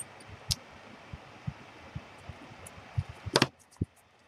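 Scissors snipping a thin paper strip in a few separate small cuts, then a louder clatter near the end as the scissors are set down on the table.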